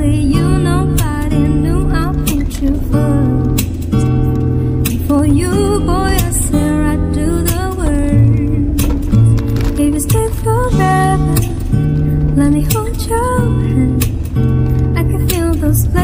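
Background music: a wavering melody over sustained notes and regular percussive strokes.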